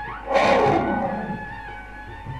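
A big cat roaring once, starting about a third of a second in, loudest at first, falling in pitch and fading over about a second, laid over sustained instrumental music.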